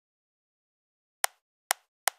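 Two sharp computer mouse clicks about half a second apart, over dead silence: the clicks pick the two corners of a selection box around objects on screen.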